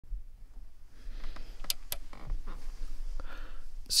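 Faint rustling and a few soft, sharp clicks, with a low hum underneath; a man starts to speak at the very end.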